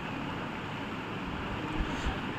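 Handheld electric livestock clipper running steadily as it shears through an animal's coat, with a brief low bump near the end.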